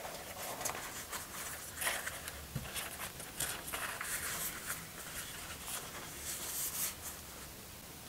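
Faint, soft rustling and crinkling of thin lavash flatbread being rolled and folded into an envelope by hand, with a few light taps against a wooden board.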